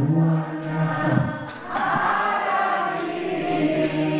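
A man singing a slow song into a handheld stage microphone, holding long notes with short breaks between phrases.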